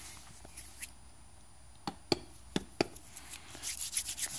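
A few light, sharp clicks and taps of handling noise over quiet room tone, most of them in the second half.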